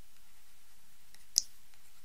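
Faint clicks and ticks of a stylus on a writing tablet as a word is handwritten, with one sharper click about a second and a half in.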